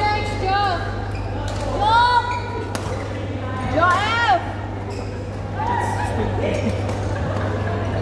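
Badminton play in a big indoor hall: short high squeaks of court shoes on the floor, loudest about two and four seconds in, with a few sharp racket hits on the shuttlecock, over a steady low hum.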